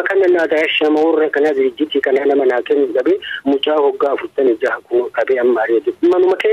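Only speech: a voice talking without pause in a radio news broadcast in Afaan Oromoo, with the thin, narrowband sound of radio.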